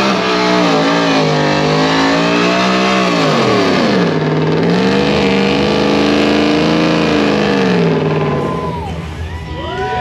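Ford F-150 pickup's engine revved high and held during a burnout, its rear tyres spinning and smoking; the revs dip briefly about four seconds in, climb back, then fall away near the end. High wavering squeals start near the end.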